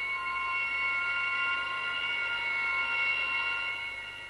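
Background film score: a sustained high drone of several steady tones held together without change, easing slightly near the end.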